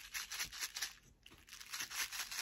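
Small loose gems rattling inside a handmade shaker ornament, a coaster with a clear plastic window, as it is shaken by hand: a faint, quick, crisp rattle of about four or five shakes a second, pausing briefly just after a second in.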